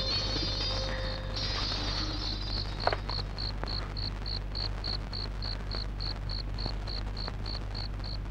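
A cricket chirping in a steady high-pitched pulse, about three to four chirps a second, over a low steady hum. A fading music tone at the start and a single click about three seconds in.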